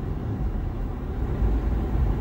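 Steady low rumble heard inside a car's cabin, the car standing still with its engine running.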